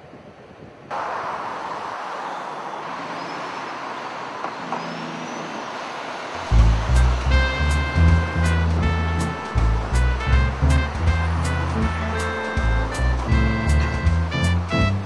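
Steady road-traffic noise from a busy highway, an even rush that comes in about a second in. About halfway through, music with a heavy bass line and a regular beat starts over it and becomes the loudest sound.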